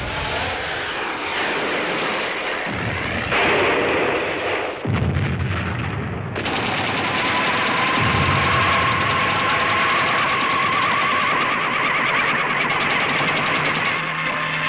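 Anti-aircraft gunfire: irregular bursts and booms at first, then from about six seconds in a continuous rapid clatter of automatic fire.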